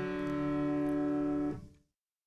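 Piano left-hand shell chord on D major, root and third (D and F-sharp) in the low register, closing a II-V-I. The chord is held ringing and then released about one and a half seconds in, dying away quickly.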